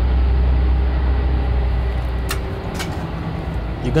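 Low, steady rumble of a bus engine that fades out about two and a half seconds in, with two sharp clicks around then.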